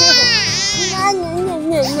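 A baby crying: a long high wail that swoops down and back up in pitch, then carries on wavering.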